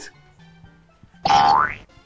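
A short cartoon-style 'boing' comedy sound effect about halfway through: one pitched tone that glides upward for about half a second.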